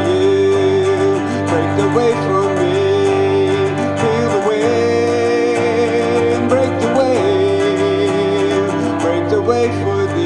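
Live instrumental passage: strummed acoustic guitar and keyboard chords under a held melody line that slides between notes.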